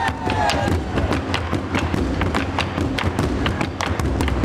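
Drums struck in a quick, slightly uneven pattern, about four strokes a second over a low, steady rumble.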